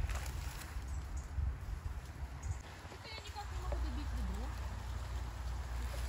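Faint distant voices over a steady low rumble, with light rustling.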